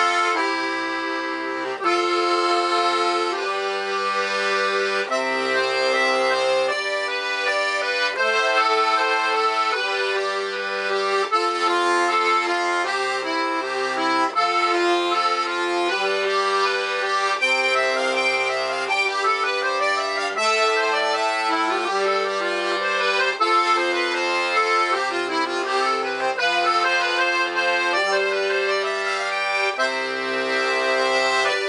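Francini 12-bass piano accordion playing a tune, its treble voiced on two middle reeds in musette tuning over a left-hand bass accompaniment whose low notes change every second or two.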